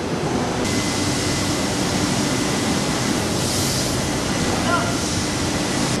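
Steady, even machinery noise of a textile finishing plant, a mix of hiss and rumble from the knit-fabric drying machine and the lines around it. It grows hissier about half a second in.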